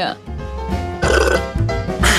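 A short burp about a second in, over background music.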